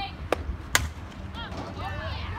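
A sharp crack, then a louder crack a little under half a second later as a fastpitch softball bat hits the pitched ball.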